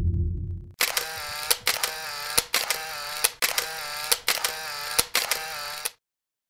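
A deep rumble fades out in the first second. Then a camera shutter fires about once a second, six times in a row, each click followed by the whirr of a motorized film advance.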